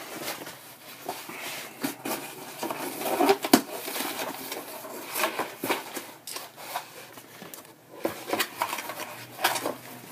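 Cardboard record mailer being opened and handled: irregular rustling, scraping and tapping of cardboard as the record package is slid out of the box.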